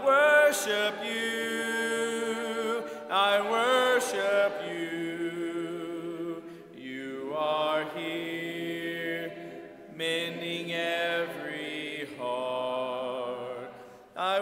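A congregation singing a hymn a cappella, unaccompanied voices led by a man at the front. The notes are held in sung phrases with brief breaks between them.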